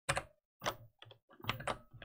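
Computer keyboard typing: a string of separate, irregularly spaced keystrokes.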